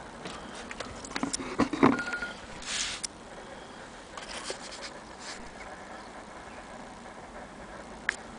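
Irregular light clicks and knocks from handling, the loudest cluster a little under two seconds in, followed by a short hiss near three seconds and a few fainter clicks around four and a half and five seconds.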